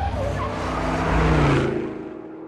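A vehicle sound effect used as a segment transition: a low engine rumble with a hiss over it, swelling for about a second and a half and then fading away.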